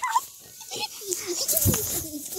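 A dog making short, wavering whines and grunts right at the phone's microphone, mixed with a few sharp knocks as the phone is bumped about.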